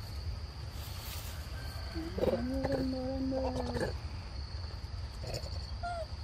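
A long, low, steady-pitched voice held for nearly two seconds in the middle, over a steady high insect drone.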